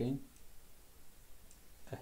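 A single faint computer-mouse click about one and a half seconds in, against quiet room tone.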